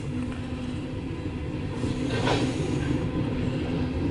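Cars of a loaded CSX coal train rolling past close by, a steady heavy rumble of wheels on rail, heard from inside a car. About two seconds in there is a brief louder surge of rattling noise.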